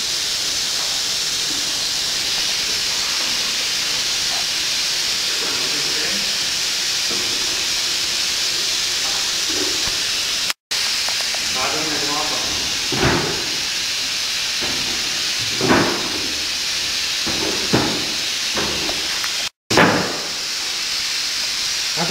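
Steady hiss of bottling-line machinery, with indistinct voices in the second half. The sound cuts out briefly twice.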